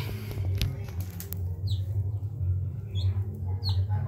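Newborn chick peeping: a few short, high cheeps that fall in pitch, spaced out, over a steady low hum.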